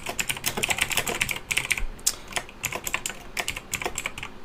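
Fast typing on a computer keyboard: a quick run of key clicks with short pauses, as a line of code is entered.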